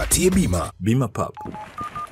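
A voice in the first second, then two short telephone keypad beeps about half a second apart, the second higher in pitch, like a number being dialled on a phone.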